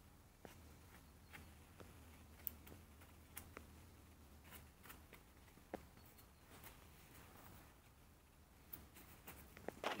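Near silence with faint, scattered light ticks and rustles from a hand sprinkling and settling compost over a plastic seed tray.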